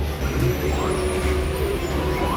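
Steady low rumble with faint voices in the background.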